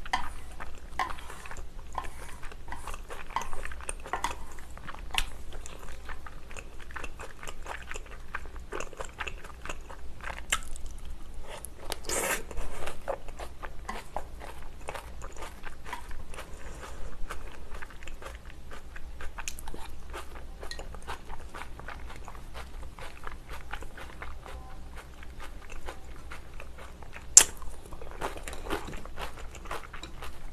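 Close-miked eating sounds: chewing of chewy rice cakes, glass noodles and seafood in cream sauce, with many small wet mouth clicks and smacks. There is a louder patch of about a second just before the midpoint, and a single sharp click near the end.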